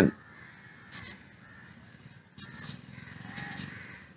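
A few short bird calls: one about a second in, then several more in the second half.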